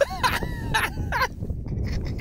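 People laughing in short, breathy bursts.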